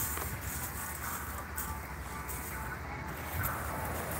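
Wind buffeting the phone's microphone in a steady low rush, over the wash of surf on the beach.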